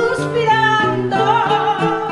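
A woman singing an Ecuadorian pasillo with a wavering vibrato, accompanied by a requinto and an acoustic guitar.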